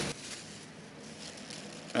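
Faint, steady background noise with a low hum; no distinct sound stands out.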